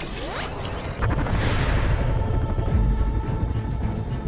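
Sci-fi film sound effects of the Waverider time ship flying in low overhead: a sharp hit and a rising whoosh, then a loud, steady low rumble from about a second in, under dramatic score music.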